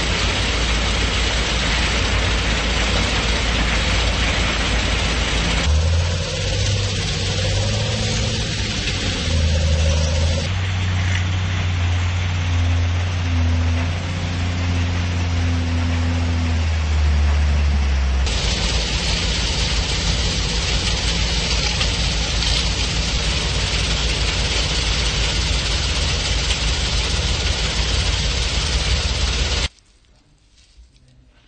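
An engine-driven machine running steadily: a deep hum under loud, rushing noise. The sound changes character abruptly several times, and stops suddenly near the end.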